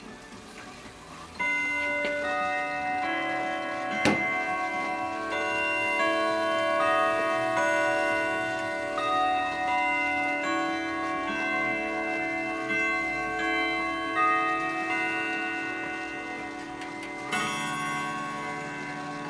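Grandfather clock chiming the hour, set off by turning the minute hand to the twelve. A melody of bell-like notes rings out one after another, each note sounding on under the next, and the clock ticks beneath it. There is one sharp click about four seconds in.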